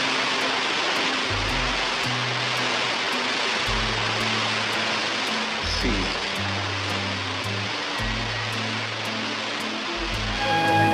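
Steady rushing and splashing of fountain water, a dense hiss, with slow, low music notes underneath.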